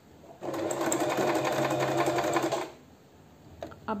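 Singer Promise 1412 electric sewing machine running in one steady burst of about two seconds under foot-pedal control, stitching the first step of a four-step buttonhole.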